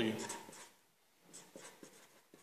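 A spoken word at the start, then a marker pen writing on paper in faint, short strokes over the second half.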